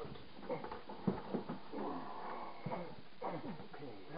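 Drawn-out, bending vocal sounds, loudest about halfway through, with a couple of short knocks in between.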